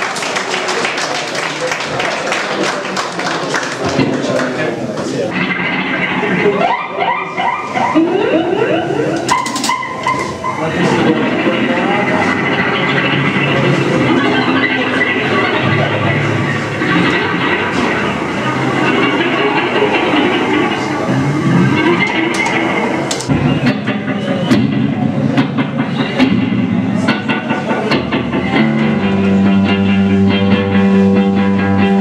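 Instrumental rock band playing live, electric guitar through effects pedals to the fore. A dense noisy wash fills the first few seconds, then pitched guitar lines with sliding notes come in over a steady band sound, with voices in the room underneath.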